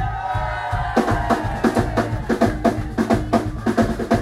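A live rock band playing. One long held note opens it, then about a second in the drum kit comes in with a fast, steady beat of kick and snare under electric guitar.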